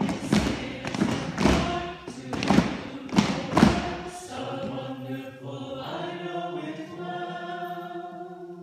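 Group of amateur singers singing a refrain together unaccompanied, with sharp beats about twice a second over the first half. After about four seconds the beats stop and the voices hold long sustained notes.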